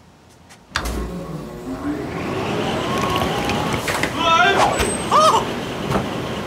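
Wall-mounted hair dryer switched on suddenly about a second in, then blowing steadily with a faint rising whine as it spins up. A man's drawn-out cries and wails join over it in the last couple of seconds.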